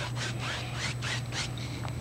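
A two-inch paint brush rubbing lightly on canvas in quick, even strokes, about four or five a second, as the paint is tapped and lifted into a soft mist. A steady low hum runs underneath.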